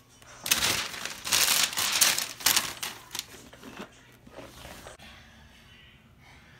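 Cardboard toy box being handled and turned over: a run of rustling, crinkling noises for about three seconds, fading to faint rubbing near the end.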